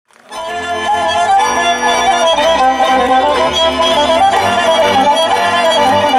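Romanian folk music, an instrumental introduction led by a fiddle playing an ornamented melody, starting abruptly a moment in.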